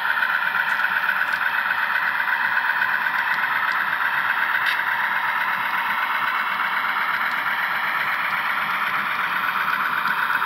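HO scale model train rolling along the track, heard from a car in the train: a steady running noise of small wheels on rail with a few faint clicks.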